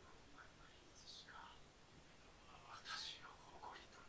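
Near silence with faint, whisper-like speech, a little stronger about a second in and again around three seconds in.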